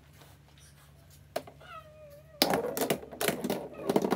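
Golf balls breaking on a LEGO-brick pool table: one click as the golf ball used as the cue ball is struck, then about a second later a burst of rapid clacking as the racked golf balls hit each other and rattle off the plastic brick cushions.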